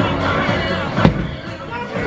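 Bowling alley din: background music and chatter with a laugh near the start, and a single sharp knock about halfway through.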